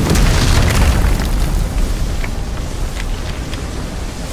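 Sound-effect explosion of an energy blast striking the ground: a heavy boom and deep rumble, loudest in the first second, then slowly dying away with scattered crackles of debris.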